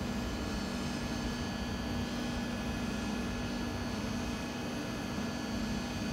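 Steady electric hum and fan noise of trains at a station, a low drone that holds one pitch throughout.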